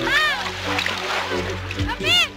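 Feet splashing through shallow breaking surf as people run in the waves, over background music with steady tones. A short, high-pitched rising-and-falling squeal comes at the start and again at the very end.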